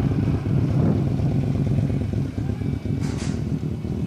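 Many motorcycle engines running together in a long line of bikes: a dense, steady, low rumble, with a short hiss about three seconds in.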